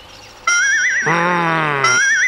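Cartoon background music: after a brief lull, a high warbling trill comes in about half a second in, joined by a low held note that sinks slightly, and the trill sounds again near the end.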